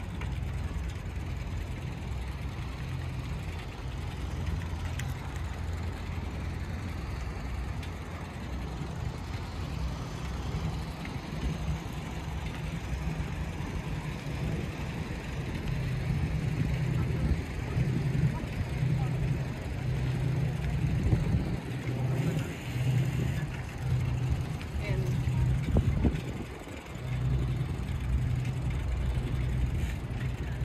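Bicycle riding along a paved path: a steady low rolling rumble from the ride. It grows louder and rougher partway through, with a brief lull near the end.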